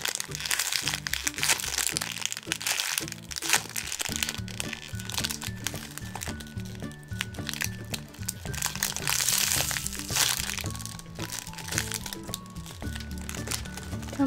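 Clear plastic bag crinkling in irregular bursts as a squishy sealed inside it is handled, over background music.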